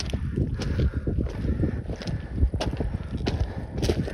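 Footsteps on a loose, rocky trail: an irregular run of crunches and scrapes of shifting stones underfoot, with sharp clicks of rock striking rock.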